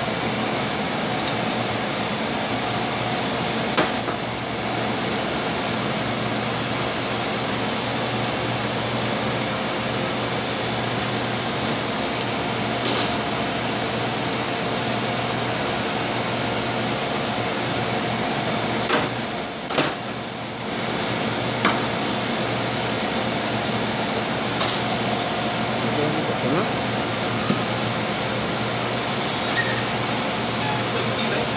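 Steady hum and rush of kitchen ventilation, with a few scattered knocks and clicks, the loudest pair about two-thirds of the way through.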